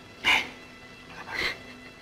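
Two short breathy exhalations from a person, about a second apart, over a faint steady background hum.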